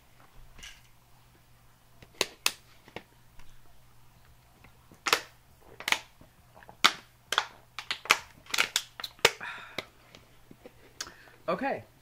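A plastic water bottle being handled and drunk from while a tablet is taken: an irregular string of sharp plastic clicks and crackles, thickest in the middle of the stretch.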